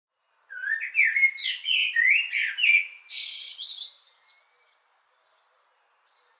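A songbird singing a string of warbled whistled phrases that rise and fall, with a harsher note a little past the middle. It starts about half a second in and stops after about four seconds.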